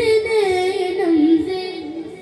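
A boy singing a manqabat, a devotional poem, into a microphone. He holds one long wavering note that dips in pitch and fades near the end.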